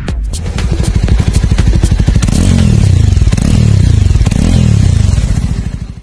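Jawa motorcycle's single-cylinder engine accelerating hard, with music underneath. Its revs climb and drop back three times, as if shifting up through the gears, before the sound fades out at the very end.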